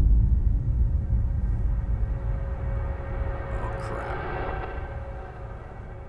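Disintegration sound effect: a deep rumble that is loudest at the start and fades away steadily, with a rushing swell about four seconds in and a faint steady tone under it.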